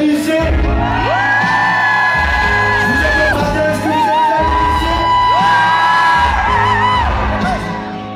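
Live pop music: a male singer holding long, wavering notes into a handheld microphone over a pulsing electronic bass beat.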